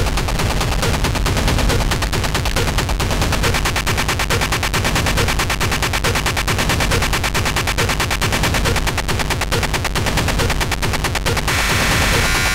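Industrial techno played live on hardware drum machines and synthesizers: a rapid, machine-gun-like stream of heavily distorted noise hits over a heavy bass layer. Near the end the rapid hits stop and a steady, static-like layered tone takes over.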